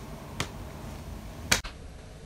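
Two sharp finger snaps about a second apart, the second louder.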